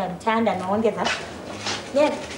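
A woman speaking a few words with a high, wavering, emotional voice, followed by a short breathy hiss.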